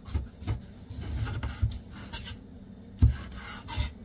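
Chef's knife scraping and knocking on a wooden cutting board as it cuts through a soft, overcooked baked sweet potato, in several separate short strokes, the firmest about three seconds in.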